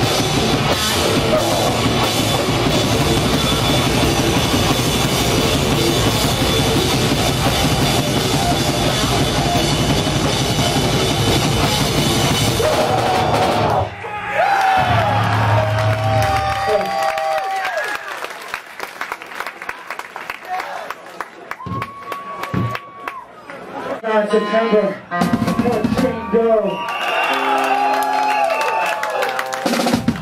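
Metallic hardcore band playing live, with loud distorted guitars and fast drums, stopping abruptly about fourteen seconds in. After the stop come held guitar tones and feedback between songs, with scattered voices.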